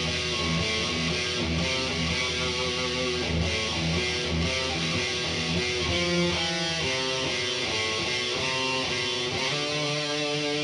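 Electric guitar through distortion playing a metal riff: low rhythmic chugs for the first half, then a run of single notes higher up from about halfway through.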